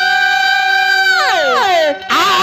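A male Bhojpuri folk singer holding one long sung note into a microphone, which slides steeply down in pitch a little past halfway and breaks off near the end.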